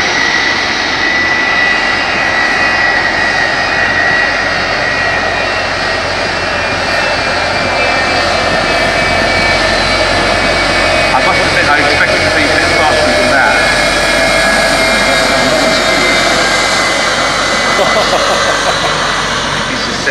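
Jet engine of a jet-powered school bus running with a steady roar and a steady high whine as the bus makes its rolling start.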